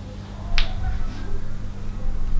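A single short, sharp snap or click about half a second in, over a steady low hum.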